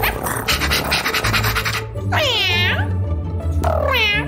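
Cartoon background music with a steady bass beat, with a quick run of rattling clicks early on. Then come two short, cat-like cries from a cartoon voice, each sliding down in pitch: one about two seconds in and one near the end.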